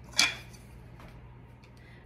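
Quiet kitchen room tone with a steady low hum, broken by one short, soft sound just after the start.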